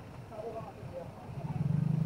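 Busy street ambience: a motor vehicle's engine running close by, growing louder near the end, under the scattered chatter of people on the pavement.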